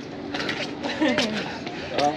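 Speech only: a voice talking softly, quieter than the talk either side.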